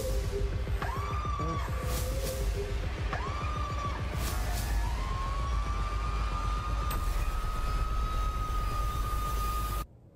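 Horror film trailer music: short swelling tones and soft sweeping hits, then a long high tone that rises slowly and is held. It cuts off suddenly to near quiet just before the end.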